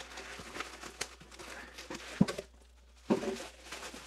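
Bubble wrap crinkling and a cardboard shipping box rustling as a bubble-wrapped item is worked loose and lifted out. There is a sharp tap about two seconds in, a brief lull just before three seconds, then louder rustling.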